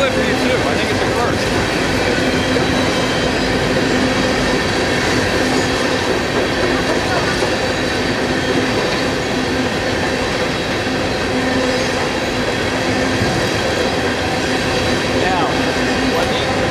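Coal train's hopper cars rolling past: a steady, loud rumble of steel wheels on rail, with a steady whine from the wheels running through it.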